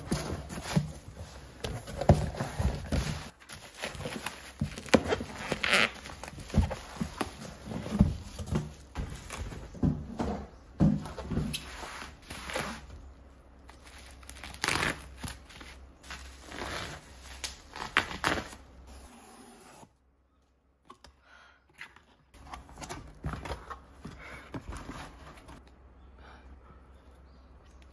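A cardboard parcel and its bubble wrap being handled and opened by hand: crinkling, tearing and cutting of the plastic wrap, with knocks and taps of the packaging against a table. The sound drops out to silence for a couple of seconds about two-thirds of the way through.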